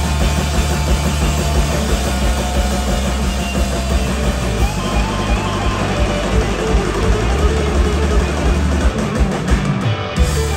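Live rock band playing an instrumental passage with no singing: electric guitars over bass guitar, keyboards and drums, loud and steady throughout.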